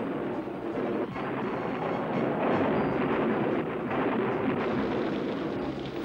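Cartoon storm sound effect: a steady rumble of thunder and rain, called up by a rain spell.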